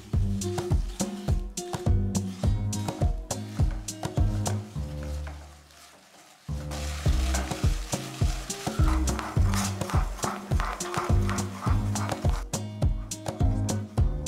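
A wooden spatula stirring and scraping melting jaggery syrup in a non-stick pan, with a sizzle from the hot syrup, under background music with a steady beat. The music fades out about halfway through and starts again suddenly.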